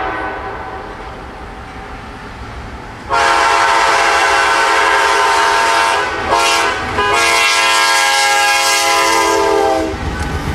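CSX diesel locomotive's air horn sounding the grade-crossing warning: a long blast, a short one and a final long blast held until the engine reaches the crossing, each a steady chord of several notes. Before the horn starts, about three seconds in, the approaching train's quieter rumble.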